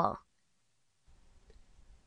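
A voice finishing the French letter name "L" right at the start, then near silence with a few faint clicks in the second half.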